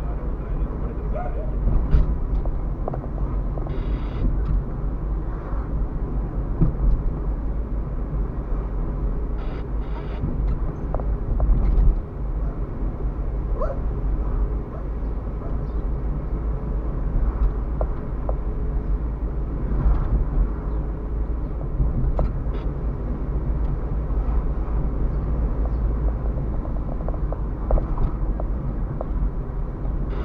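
Car driving slowly, heard from inside the cabin: a steady low rumble of engine and tyres on the road, with occasional short clicks and knocks.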